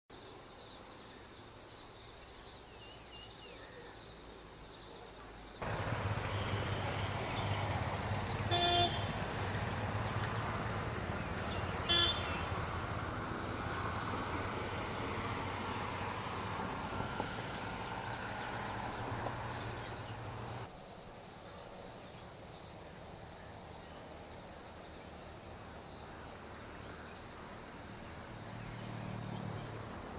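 Outdoor ambience with a steady high insect drone and scattered short bird chirps. In the middle a louder stretch of low rumbling noise, like a vehicle, starts and stops abruptly, and two short horn-like toots sound within it.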